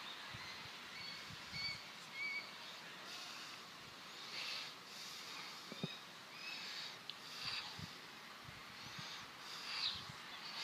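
Faint outdoor ambience with short, high bird chirps every second or so, and a couple of soft low knocks about six and eight seconds in.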